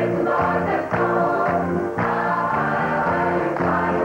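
Southern gospel choir of mixed men's and women's voices singing an upbeat hymn, with hand-clapping on the beat.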